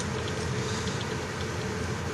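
Steady room noise: an even hiss with a faint, constant hum.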